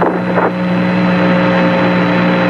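Steady hiss and hum of the Apollo 11 radio transmission from the lunar surface, with the tail of a voice fading out in the first half-second.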